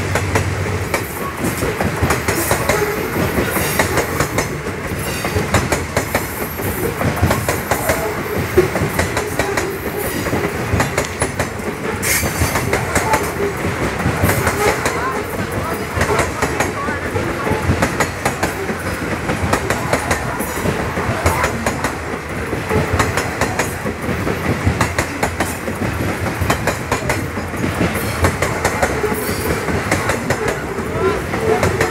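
Loaded grain-train covered hopper wagons rolling past close by: steel wheels running on the rails, clattering over rail joints in a steady, continuous string of clicks and knocks.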